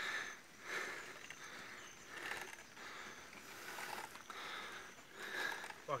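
Mountain bike being ridden on a dirt road: faint drivetrain and tyre noise that swells and fades about every second and a half.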